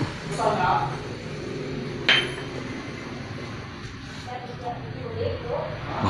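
A single sharp clink of a hard object with a short ringing tone, about two seconds in, amid quiet voices.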